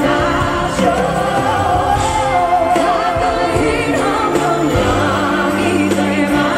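Two women singing a duet live on stage over band accompaniment, the voices taking turns, with one long held note in the middle.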